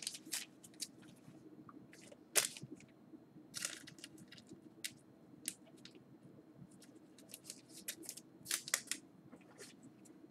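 Faint, scattered clicks and rustles of trading cards and their packaging being handled, with the sharpest ticks about two and a half seconds in and again near the end. A faint steady hum sits underneath.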